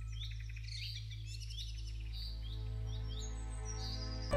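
Background music with birdsong mixed in: repeated short bird chirps, about two a second, over a soft steady drone.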